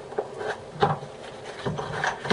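A cardboard box being handled and slid open, its inner tray rubbing out of the sleeve, with a few light knocks.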